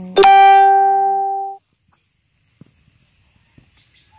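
A single loud plucked-string note, struck sharply and ringing for about a second and a half before it is cut off abruptly.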